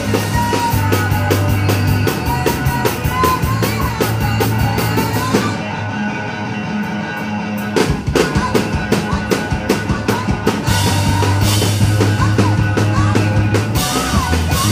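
A four-piece rock band playing live: drum kit, electric guitar, bass and a singer. About five and a half seconds in, the drums drop out and the music thins for a couple of seconds, then the full band comes back in with a hit around eight seconds.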